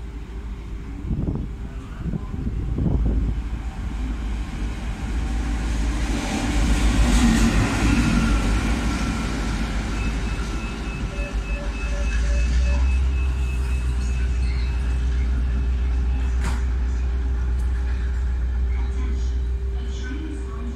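A locomotive running light through a station on the through track, its engine and wheels rumbling as it approaches and passes close by, with a strong steady low drone from about twelve seconds on.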